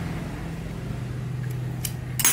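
Steady low mechanical hum of a running motor, with a light metal click near the end.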